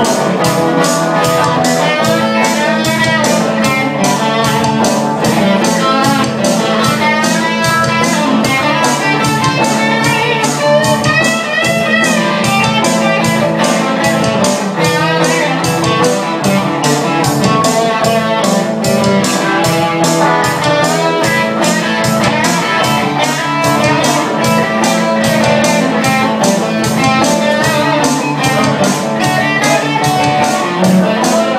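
Live blues band playing an instrumental passage: electric guitar lead lines that bend in pitch over a strummed rhythm guitar and a steady beat.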